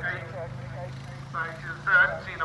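Event announcer's commentary over a public-address loudspeaker, in short phrases, over a steady low hum.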